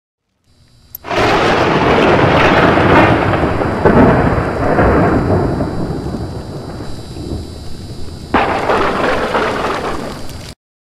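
Thunder-like crash sound effect of a logo intro: a loud rumble starts suddenly about a second in and slowly fades, then a second sudden crash comes near the end.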